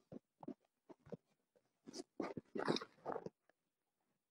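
Faint short taps and rustles from a smartphone being handled close to its microphone, with a mumbled word about two seconds in.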